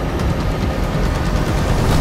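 Attack helicopter flying past: a loud, steady rumble.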